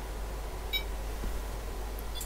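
A single short electronic beep from a digital oscilloscope's front-panel button as it is pressed to re-arm the trigger, over a low steady hum.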